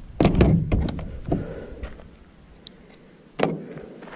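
Hand tools clattering in a hard plastic tool case as one is picked out: a quick run of clicks and knocks in the first second and a half, then one sharper thunk about three and a half seconds in.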